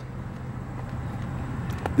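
Steady low outdoor background rumble with no distinct events, a faint click just before the end.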